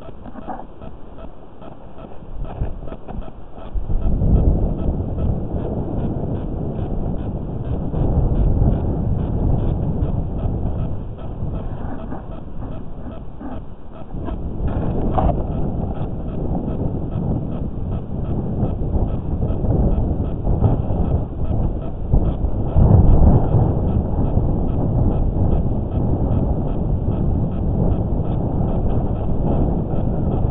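Wind buffeting the microphone: a low, uneven rumble that swells about four seconds in, again around eight seconds, and most strongly near twenty-three seconds.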